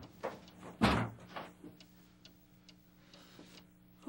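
A house's front door closing with a thud about a second in, followed by a few faint clicks.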